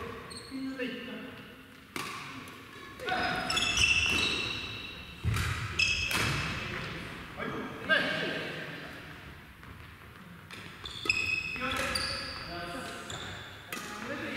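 Badminton doubles rallies in a large gym hall: sharp racket strokes on the shuttlecock at irregular intervals and sneakers squeaking on the wooden floor, all echoing in the hall.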